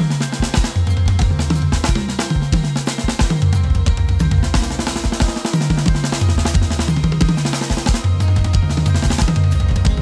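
Drum kit played hard over backing music, with dense snare strokes and bass drum. The groove moves between note subdivisions.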